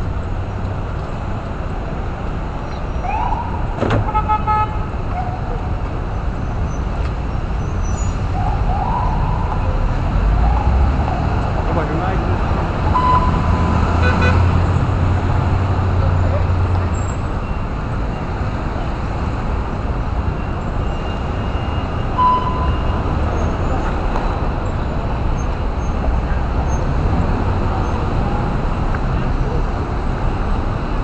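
Busy city-street traffic: a steady low rumble of car and taxi engines moving through an intersection, heavier about halfway through as vehicles pass close. A few short horn toots sound over it, about 4, 13 and 22 seconds in.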